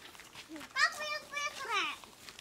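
A child's high-pitched calls: a short cry about a second in, a held note, then a falling call.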